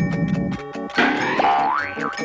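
Light cartoon score with mallet-percussion notes. About a second in, a loud comic sound effect breaks in: a springy boing whose pitch wobbles and slides up and down for most of a second.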